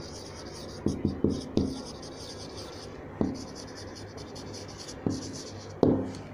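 Marker pen writing on a whiteboard: short scratchy strokes, broken by sharp knocks, a cluster of four about a second in, then single ones around three and five seconds, the loudest near the end.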